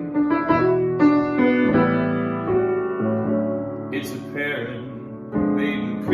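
A grand piano played in a slow, jazzy style, with full chords struck one after another and left to ring. The playing thins out and grows quieter before a new chord comes in just after five seconds in.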